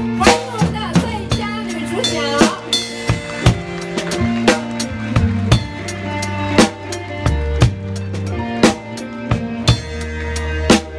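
Acoustic drum kit played close up in a live band, with snare and bass drum strokes and cymbals keeping a slow, steady beat over bass and melody.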